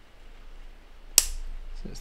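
Side cutters snipping through a thin headphone-cable wire in one sharp click a little over a second in, trimming the wire back to length before it is soldered to the jack.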